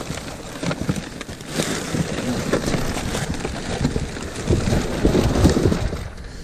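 Plastic wrap and packaging crinkling and rustling continuously as rubber-gloved hands rummage through discarded produce, with heavier crunching near the end.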